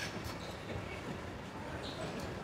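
Steady room noise of a gym floor, a low rumble, with a few light clicks near the start.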